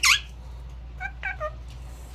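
Indian ringneck parakeet calling: one loud, sweeping call right at the start, then a few short, soft notes about a second in.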